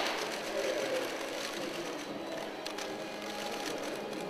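Camera shutters clicking irregularly over a low, steady room murmur.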